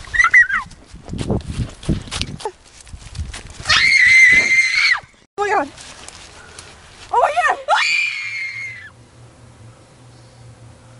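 Girls' acted screams: a short wavering scream at the start, a long high held scream about four seconds in, and another scream rising and held for over a second near eight seconds, with thumps and rustling in between. The screaming cuts off suddenly about nine seconds in, leaving a faint steady hum.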